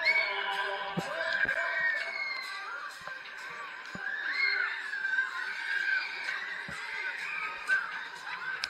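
Loud fairground music with riders screaming, their cries rising and falling again and again.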